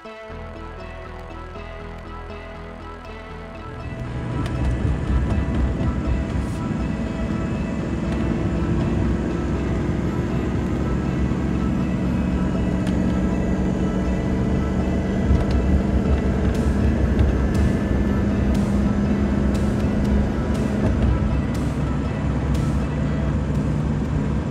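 Background music over a 6.0 Powerstroke V8 turbo-diesel running and pulling hard, getting louder about four seconds in, with a slowly rising engine note through the middle. The truck's high-pressure oil pump is failing: it makes only about 750 psi of injection control pressure while over 3,500 is demanded.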